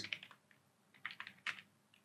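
Faint computer keyboard typing: a few separate keystrokes about a second in.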